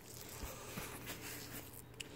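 Quiet room tone with a few faint scuffs and ticks, as the camera is carried across the floor to the workbench.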